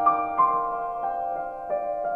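Soft ident jingle music: a slow melody of chiming notes, each ringing on over held tones.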